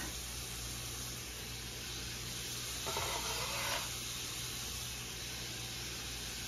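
Skillet of onions frying with a steady sizzle, briefly louder about three seconds in as the chopped shrimp are scraped into the hot pan.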